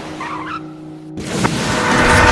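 Soft film score, then about a second in a sudden rising rush of water spray and engine as a car surges up out of the sea.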